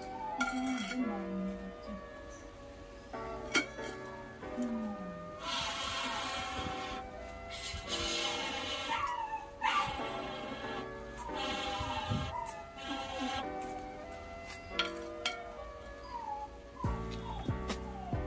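Background music of sustained notes, with a few short gliding animal cries, like a pet's whine, over it.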